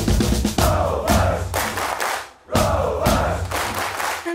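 A group of voices chanting two phrases together over a band's drums and bass, with a short break almost to silence about halfway.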